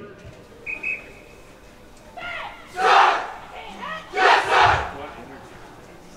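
Marching band members shout together twice in reply to the announcer's "Is your band ready?", the second shout near the end. About a second in, before the shouts, there are two short high peeps.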